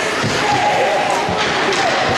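Ice hockey game sound in a rink: voices shouting from the bench and stands over skates on the ice, with two sharp knocks of stick and puck, one just after the start and one past the middle.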